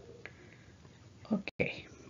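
Speech only: after about a second of faint room tone, a voice says "Ok", and the sound cuts out for an instant just after.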